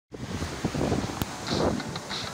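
Sea wind buffeting the microphone in uneven gusts over the wash of breaking surf.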